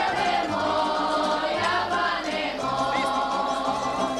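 A group of voices singing a folk song together in long held notes that step from pitch to pitch, with lower voices or instruments sounding underneath.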